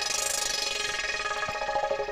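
Software synthesizer patch built in Bitwig's Poly Grid, one oscillator through two filters with LFO modulation, holding sustained notes rich in overtones, with a bright noisy swell right at the start.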